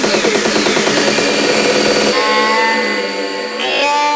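Hard trance DJ mix: a dense, fast-repeating synth pattern with a falling sweep, and about halfway in the bass cuts out abruptly, leaving held synth notes as the track moves into a breakdown.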